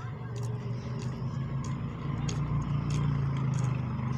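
A motor vehicle's engine running steadily as a low drone, shifting slightly higher in pitch about three seconds in, with scattered light clicks over it.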